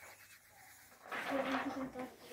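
Near silence, then a faint voice calling out from about a second in.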